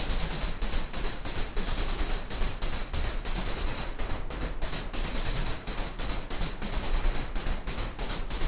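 Synthesized noise percussion from the Zebra 2 software synth: white and pink noise, filtered and distorted, played by an arpeggiator as a fast, even run of short hissy hits. The top end briefly dulls for a few hits near the middle.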